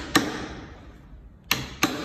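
Hammer striking the end of a long screwdriver used as a drift in a bore of a cast aluminium Volkswagen 0AM DCT gearbox housing. There are three sharp metallic strikes, one just after the start and two a third of a second apart near the end, each with a brief ring.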